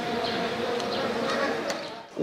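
Outdoor cricket-ground ambience: an indistinct murmur of voices over a steady buzzing hum, fading down near the end.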